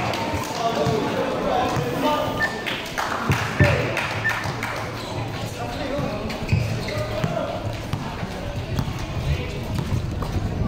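A basketball bouncing on a court surface, a few separate thuds, under steady crowd chatter and shouts, with music in the background.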